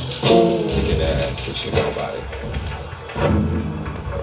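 Live band music played in a crowded room, with bass notes and drum hits, and voices mixed in.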